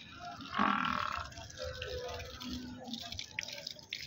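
Indistinct background voices over a busy haze of noise, with one short, louder call about half a second in.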